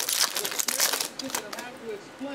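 Foil trading-card pack wrapper crinkling and tearing as it is ripped open by hand, a run of sharp crackles in the first second and a half that thins out after.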